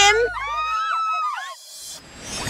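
Young women whooping and squealing with gliding, rising-and-falling voices over upbeat background music. The music's bass stops just under a second in, and the voices fade out near the end.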